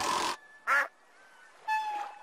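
Cartoon sound effects: a brief whoosh as the fishing rod is swung, then a short, nasal, quack-like squawk, and near the end a thin, steady whistle-like tone that slides slightly down.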